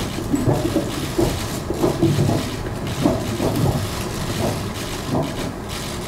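Indistinct noise of a busy hall: people moving about and faint talking in the background, with no single clear sound.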